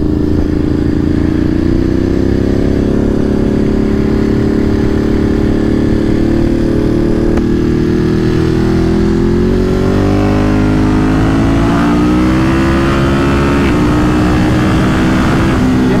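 Ducati Monster 937's 937 cc Testastretta V-twin pulling hard under acceleration, heard from the rider's seat, its note climbing steadily and then faster. Near the end it drops briefly with an upshift from third to fourth, then climbs again.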